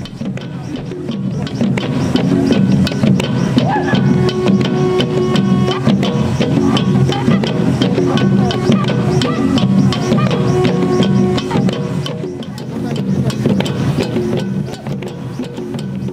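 Hollowed log drums beaten with sticks in a steady, quick dance rhythm, with a horn sounding held notes over them. It is loudest through the middle and eases off towards the end.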